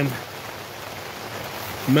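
Steady rain falling, an even hiss with no distinct knocks or tones.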